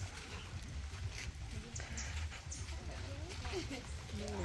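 Faint voices in the background over a low, steady rumble.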